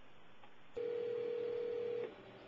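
A steady telephone line tone over a speakerphone starts about three-quarters of a second in and holds evenly for over a second.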